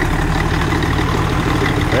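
Caterpillar D6 crawler's D318 diesel engine idling steadily.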